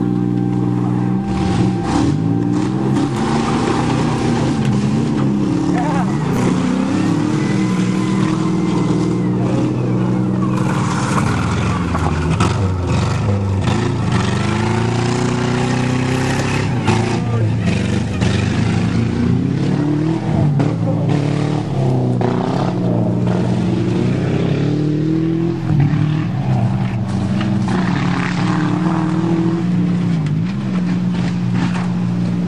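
Car engines running hard and revving up and down over and over as two old cars, a Buick and a Saturn, drive around a field and push against each other, with a few sharp knocks.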